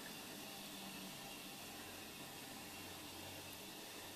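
Faint steady hiss of room tone and microphone noise, with a faint low hum underneath.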